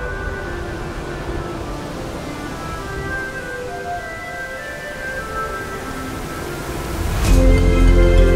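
Background music: soft held chords that build into a louder passage with deep bass about seven seconds in.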